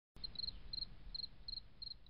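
Faint cricket chirping: high, evenly repeated chirps, each a quick run of three or four pulses, about three a second.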